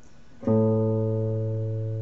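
Electric guitar sounding a single low note, plucked about half a second in and left to ring, slowly fading: the root of a major-third interval about to be played.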